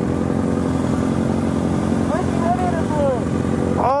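Motorcycle engine idling steadily, with a faint voice about two seconds in.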